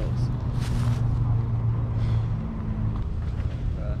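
A steady low engine hum runs throughout. About half a second in there is a brief rustle, like a plastic bag being handled.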